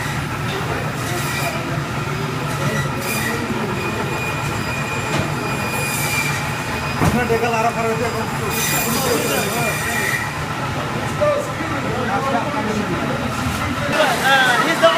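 Meat-cutting band saws running with a steady whine and several harsh screeches as the blades cut through bone and meat, over the hum of the cutting-room machinery and background chatter.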